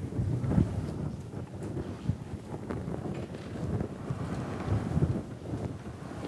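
Low, uneven rumbling and rustling on the microphone, with a few soft clicks and knocks.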